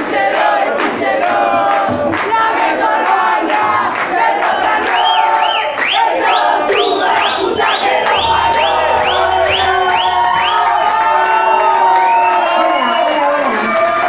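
A bar crowd shouting and cheering, many voices at once. From about five seconds in, a fast run of short, shrill rising-and-falling whistles, about three a second, goes on for several seconds.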